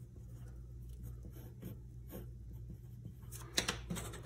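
Pencil writing on paper: faint scratching strokes, with a couple of sharper taps near the end, over a steady low hum.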